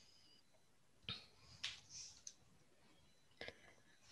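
Near silence, broken by a few faint, short clicks spread through the pause.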